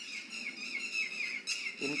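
Small birds chirping, a continuous run of quick high chirps, with a brief rustling burst about one and a half seconds in.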